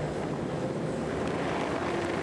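A full grid of World Superbike race bikes revving their engines together on the starting grid, a steady massed engine noise in the seconds before the start.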